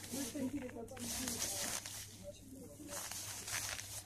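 Rustling handling noise as gloved hands turn a large plastic beer bottle, in three short bursts.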